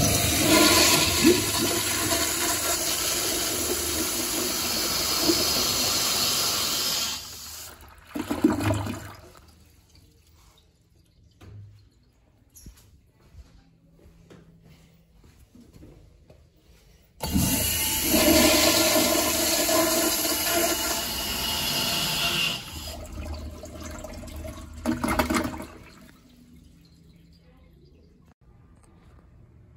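Two flushes of 1960s American Standard Afwall wall-hung toilets through chrome flushometer valves, both very aggressive. Each is a loud rush of water lasting five to seven seconds, ending in a short gurgling burst. The second flush starts about 17 seconds in, after a quiet gap.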